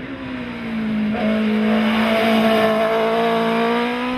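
Hillclimb race car passing at high revs on a wet road: one steady, high engine note that grows louder to a peak about two seconds in, then falls slightly in pitch as the car pulls away.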